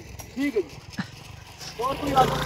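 A short quiet pause with brief faint voice sounds, about half a second in and again near the end, and a single sharp click about a second in.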